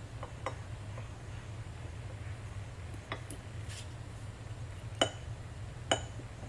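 Clear glass mug and glass dish clinking lightly as they are handled, with small taps and rustles of vinyl stickers being peeled and pressed on. Two sharper ringing clinks come near the end, about a second apart, over a low steady hum.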